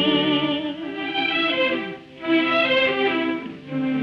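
Music from a 1948 radio broadcast: a tenor's held note with orchestral accompaniment, the voice ending within the first second while the strings carry the melody on alone. Two brief dips in loudness follow.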